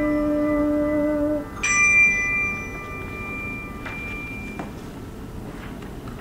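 Handbells ringing a held chord that is damped about a second and a half in, then a single high handbell struck and left to ring out for about two seconds. A couple of faint knocks follow over quiet room noise.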